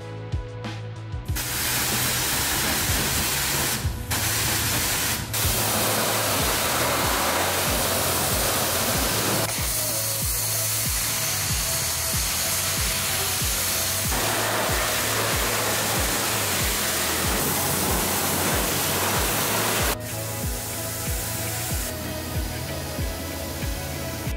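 High-pressure washer jet spraying water over an engine bay: a loud, steady hiss that starts about a second in and drops away at about 20 seconds. Background music with a steady beat plays underneath.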